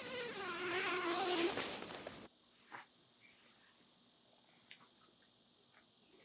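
A zipper on an awning's fabric cover bag being pulled open: a buzzing rasp whose pitch wavers with the speed of the pull, lasting about two seconds and stopping abruptly. After it, near silence with a few faint clicks.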